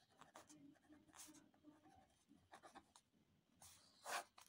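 Faint scratching of a ballpoint pen writing in cursive on notebook paper, in a series of short strokes.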